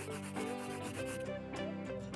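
A marker scribbling quickly back and forth on paper, coloring in, in a run of quick strokes that thin out in the second half. Background music plays beneath.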